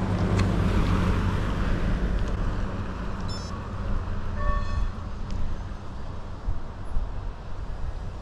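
Wind buffeting the microphone, a steady low rumble with hiss through it. A brief high squeak-like call sounds about four and a half seconds in.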